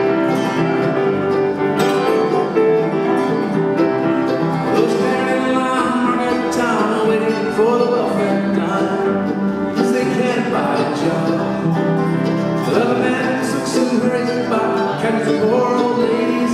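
Live acoustic music: grand piano, Dobro and a mandolin-family instrument playing together, the Dobro's slide gliding between notes several times.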